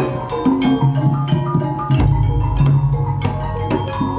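Live Javanese gamelan accompaniment for lengger dance: hand drums beating out a rhythm under ringing struck tuned metal percussion.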